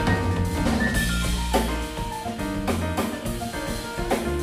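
Small jazz band playing live: saxophone, grand piano, guitar and drum kit, with held melody notes over steady drumming.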